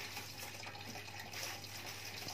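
Steady, even background hiss with a faint low hum underneath.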